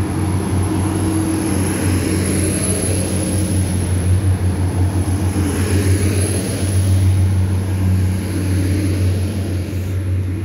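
Transport for Wales Class 175 diesel multiple unit pulling away and passing close by, its underfloor Cummins diesel engines running under load with a steady deep drone. A thin high whine runs over it.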